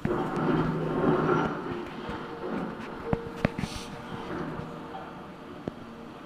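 Cat excavator demolishing a brick wall: rubble clattering and falling, with a few sharp knocks around the middle and one near the end, over the machine's steady engine.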